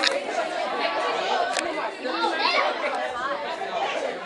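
Several girls' voices chattering and talking over one another, with no clear words. A single sharp click about a second and a half in.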